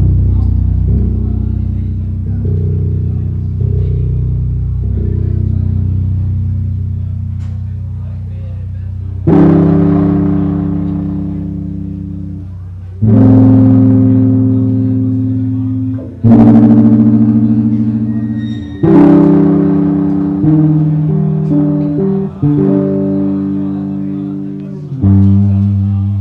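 Electric bass guitar playing slow, long notes and chords, each struck and left to ring out and fade. From about nine seconds in, a new one comes every three seconds or so.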